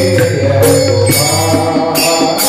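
Devotional kirtan music: steady held instrumental tones with bright metallic cymbal strokes recurring about every half second.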